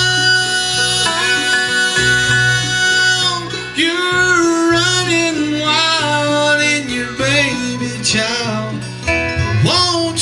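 Bluegrass band playing live: dobro, banjo, fiddle, acoustic guitar and upright bass, with sustained, sliding lead notes over a steady bass line.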